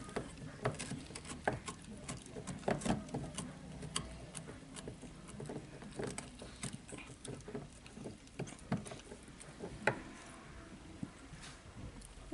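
A six-month-old labradoodle puppy gnawing on a pizzle (bully stick): irregular clicks and crunches of teeth on the chew, with one louder crunch near the end.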